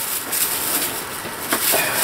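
Rustling and knocking of cardboard and plastic packaging being handled, with a sharp click about one and a half seconds in.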